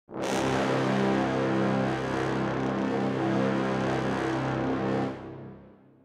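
Sampled brass ensemble from the Spitfire Albion II library, played from MIDI, holding one long, loud, low chord. It starts about a quarter second in, holds steady for about five seconds, then is released and dies away in reverb near the end.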